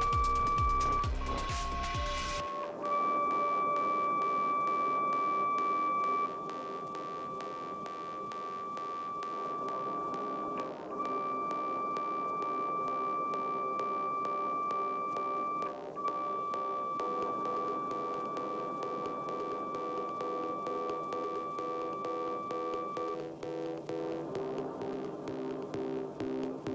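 Steady pure test tone of about 1,160 Hz from a tone generator, played through the speaker that vibrates a salt-covered Chladni plate. It breaks off briefly a few times and is nudged slightly up and down in pitch. About three seconds before the end it changes to a low steady tone of about 150 Hz. Background music with a steady beat runs underneath.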